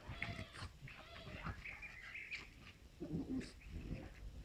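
Two dogs, a Moscow watchdog x American Staffordshire terrier mix and a French bulldog, play-fighting and making short vocal noises. There is a higher, wavering whine about a second and a half in, and lower, rougher sounds near the end.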